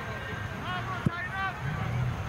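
Soccer players calling out to each other across the field in short shouts, with one sharp thump about halfway through, over a low steady rumble.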